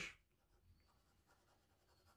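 Faint scratching of a coloured pencil on paper as small marks are drawn, close to silence.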